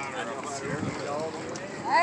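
Indistinct background voices of people chatting, with wind noise on the microphone.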